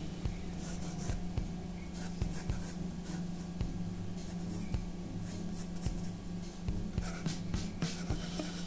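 Pencil scratching on drawing paper in many short, irregular strokes.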